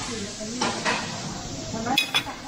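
Metal serving tongs clinking against a steel buffet tray and a china plate as bread dumplings are lifted and set down: a few light knocks, the sharpest near the end, over faint background chatter.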